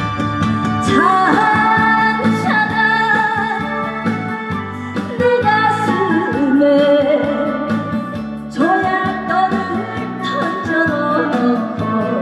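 A woman singing a Korean trot song into a microphone over keyboard-led backing music through the stage speakers, her voice coming in about a second in.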